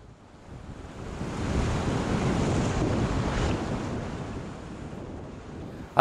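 Rushing river whitewater, a steady roar of moving water that fades in from silence over the first second or two and eases off a little toward the end.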